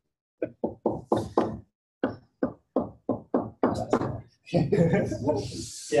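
A stylus tapping again and again on a touchscreen laptop's glass, putting dots into a drawn matrix: a quick run of short knocks, about four a second, stopping about four seconds in.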